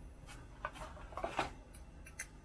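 Faint handling noises: a few light clicks and rubs as a small chainsaw part is turned over in the hands.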